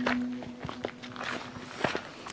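Footsteps on a dirt path: a few uneven steps and scuffs, while a held background-music tone fades away.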